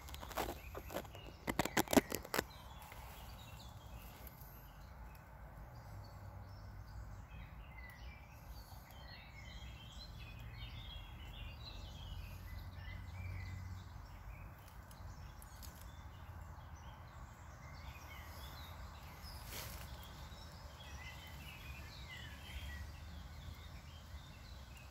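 Birds chirping faintly in the background over a low steady rumble. A quick run of sharp clicks comes in the first two seconds or so, louder than anything else.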